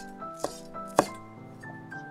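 Chef's knife chopping green onions on a wooden cutting board: two knife strikes about half a second apart in the first second, over background music with sustained piano-like notes.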